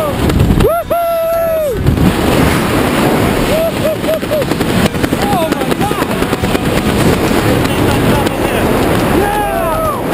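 Loud, unsteady wind rush battering a camera microphone during a tandem parachute descent under an open canopy. Short vocal whoops break through now and then.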